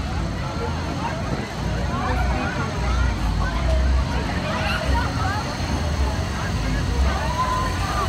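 Fairground din: a steady low rumble of ride machinery under scattered chatter from the crowd.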